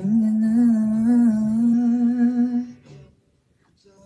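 A man humming one long held note with a slight waver, breaking off about three seconds in.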